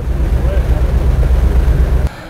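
Steady low rumble of a boat under way, with faint voices behind it.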